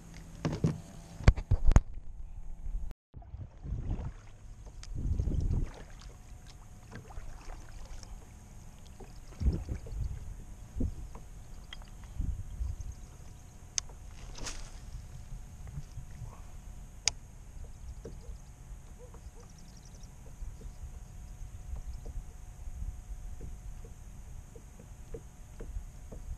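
Fishing kayak moving over calm water: a low rumble of water and hull with scattered knocks and thumps of gear. The first two seconds hold a few sharp knocks from handling a caught fish and tackle on the deck.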